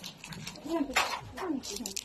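A person's voice: a few short speech-like sounds.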